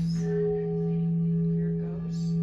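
Large crystal singing bowl tuned to E, sung by rubbing a suede-covered mallet around its rim: a steady low tone, with a higher overtone swelling in shortly after the start.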